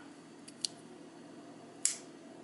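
Small metal clicks from an IM Corona Magie pipe lighter's lid mechanism being worked by hand: two faint ticks about half a second in, then one sharper click near the end.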